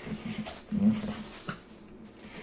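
Plastic wrapping rustling as a bagged jersey and card are handled in a cardboard box. About a second in comes a short, low whine- or hum-like sound.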